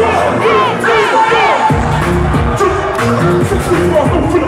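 Loud live music with heavy bass played over a concert sound system, heard from inside a cheering crowd. The bass drops out about a second in and comes back in hard just before the middle.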